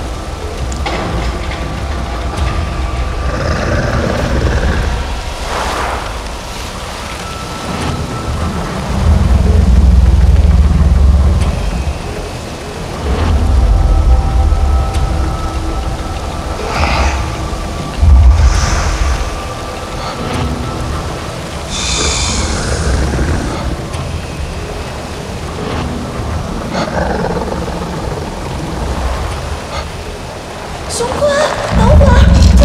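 Action-film soundtrack: deep rumbling booms that swell and fade in surges over a sustained music score, with a few sharp hits and bursts of hiss.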